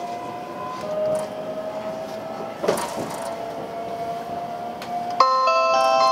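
Cabin of a JR Shikoku 8000-series electric express train running, with a faint whine that slowly rises in pitch and a click about two and a half seconds in. About five seconds in, the JR Shikoku onboard chime starts, a bright bell-like melody that announces the conductor's announcement and is the loudest sound.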